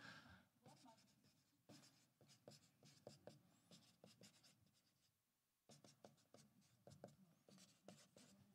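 Faint scratching of a marker writing on a paper sheet on a wall, in short strokes, with a pause about five seconds in.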